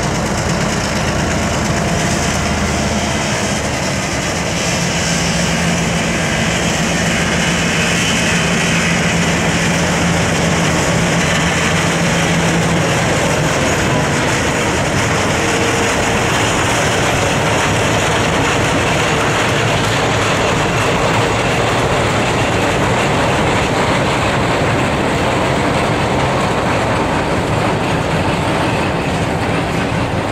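Freight train passing close by: a pair of switcher diesel locomotives hauling double-stack intermodal well cars. The locomotives' engine hum fades out about halfway through, leaving the steady rumble and clickety-clack of the cars' wheels on the rails.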